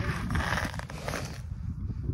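Close-up rustling and scraping handling noise, strongest in the first second, over a low rumble of wind on the microphone.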